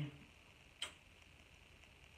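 Near silence with room tone, broken by one faint short click a little under a second in.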